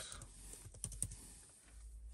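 Keys tapped on a laptop keyboard: a short run of light typing clicks as a word is entered, thinning out in the last half second.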